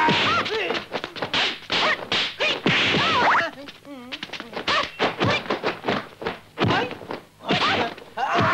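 A rapid series of dubbed punch and slap sound effects in a kung fu fight, several blows a second, with the fighters' yells and grunts between them.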